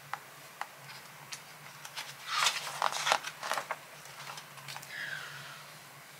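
Paper pages of a picture book being handled and turned: a few faint ticks, then about a second and a half of rustling and crackling starting a couple of seconds in.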